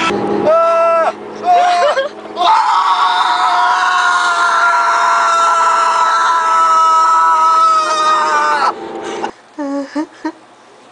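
A person screaming in a car: a couple of short high cries, then one long high scream of about six seconds that sinks slightly in pitch before breaking off.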